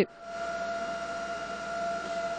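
Fire-scene sound at a burning wooden house being hosed down: a steady whine held at one pitch over an even hiss of spraying water and fire-engine equipment.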